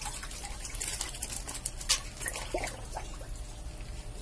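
Water dripping and splashing in a concrete lobster tank, with scattered small clicks and one louder sharp splash about two seconds in.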